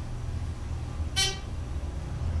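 Dover in-ground hydraulic elevator car rising, with a steady low hum from its pump and ride. About a second in there is a single short electronic beep, the floor-passing signal as the car reaches the second floor.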